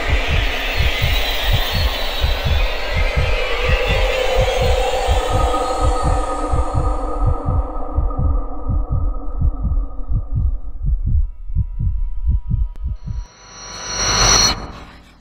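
Suspense sound design: a low heartbeat-like pulse of about three beats a second under a sustained drone. Near the end the pulse cuts out and a sudden loud, high-pitched hit lands.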